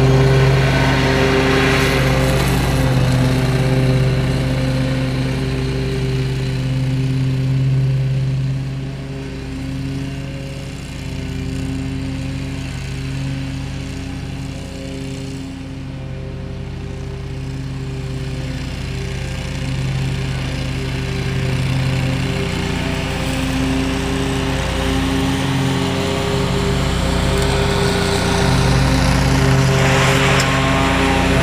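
Toro Grandstand stand-on mower's engine running steadily at mowing speed. It is loudest at the start, fades as it moves away, and grows loud again near the end as it comes back close.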